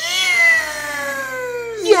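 A man's high falsetto wail, one long cry of about two seconds that slowly falls in pitch, an exaggerated sob.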